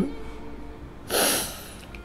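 A narrator's quick, audible intake of breath between spoken phrases, lasting about half a second, about a second in.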